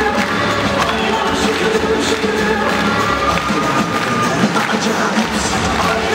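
Music for a group rhythmic gymnastics routine, heard over an arena's loudspeakers.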